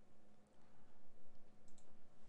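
Faint computer mouse clicks, a pair in quick succession near the end, as a field in an on-screen dialog is selected, over a faint steady low hum.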